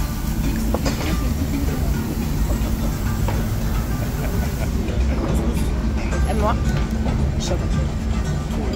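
Restaurant background: music and indistinct voices over a steady low rumble, with a few light clicks of tableware.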